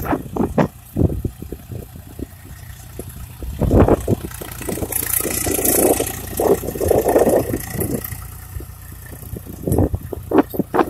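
Swaraj 735 FE tractor's three-cylinder diesel engine running under load as it pulls a tine cultivator through dry soil: a steady low rumble with a few louder surges.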